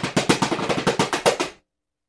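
Homemade Mattoni drum kit played in a fast roll of rapid drum strokes that stops sharply about one and a half seconds in.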